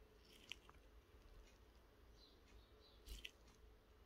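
Near silence: quiet room tone with a few faint small handling clicks, one about half a second in and a short cluster near three seconds.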